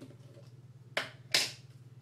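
Two sharp plastic clicks about a third of a second apart, the second louder, as the tub of hair masque is handled and its lid opened.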